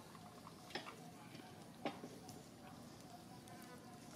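A macaque biting and chewing a green fruit, with two sharp clicks, about one and two seconds in, over a faint steady buzz.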